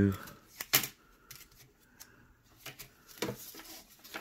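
Handling noise from LED strip-light reels and their plastic packaging being picked up and set down: a sharp click about three quarters of a second in, then a few lighter clicks and rustles near the end.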